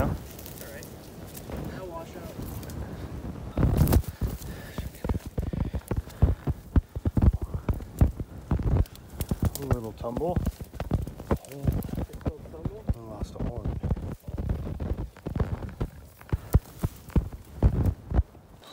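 Footsteps and dry brush crunching and snapping as people push through twigs and dead grass on a steep slope, an irregular run of crackles and thuds with one heavier crunch about four seconds in. Faint voices come through now and then.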